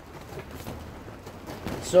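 Quiet workshop background with a few faint clicks of lathe parts being handled; a man starts speaking near the end.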